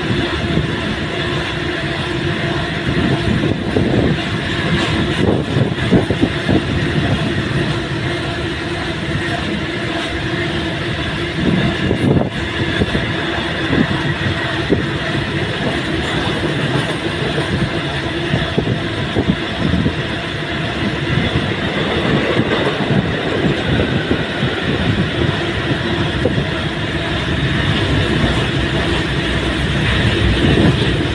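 A long-haul freight train's empty open wagons rolling past directly below: a steady rumble with rapid rattling and clatter of wheels on the rails.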